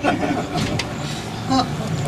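A cruise boat's engine running steadily with a low hum. A short vocal sound comes about one and a half seconds in.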